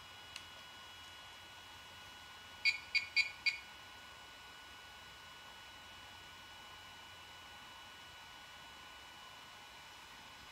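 A DJI Inspire 2 drone, powered on, gives four quick high-pitched electronic beeps about three seconds in, after a faint button click at the start, over a steady faint electronic whine. No landing-gear motor is heard: the gear fails to retract after the five button presses.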